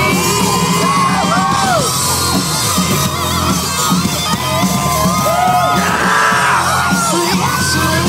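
A rock band playing live at full volume, heard from within the crowd in front of the stage, with yells rising over the music.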